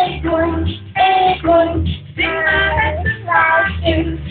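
A young girl singing a song, phrase after phrase with short breaks between.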